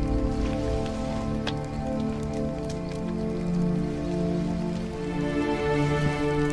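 Background music of long, overlapping held notes that shift in pitch every second or two, over a steady hiss with a few faint ticks.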